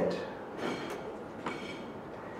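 Quiet room tone of a lecture hall during a pause in a speech, with a soft breath and a small click about one and a half seconds in.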